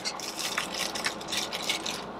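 Thin plastic bags rustling and crinkling as boxed action figures are pulled out of them.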